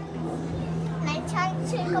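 Children and other people chattering, several voices at once, over a steady low hum.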